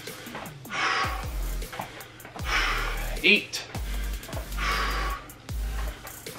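A man breathing hard from exertion, with three heavy exhales about two seconds apart, one per lateral lunge, over background music.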